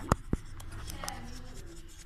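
Plastic spatula stirring thick cake batter in a steel bowl, scraping against the metal, with two sharp knocks on the bowl in the first half-second.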